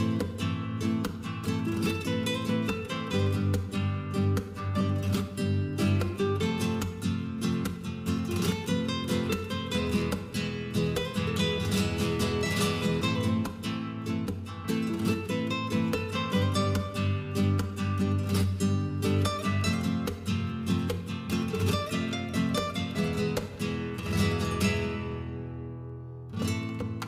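Background music: acoustic guitar playing quick plucked notes mixed with strums, in a Spanish-flavoured style, fading out near the end.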